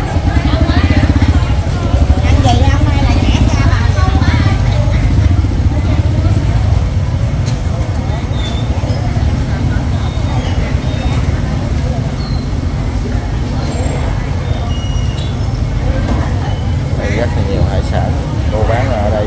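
Busy market ambience: people talking nearby over a steady low rumble of motorbike engines moving through the aisles. The talk is strongest in the first few seconds and again near the end.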